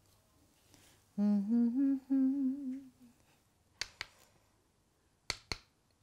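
A woman humming a short wavering tune for about two seconds, followed by two pairs of sharp taps.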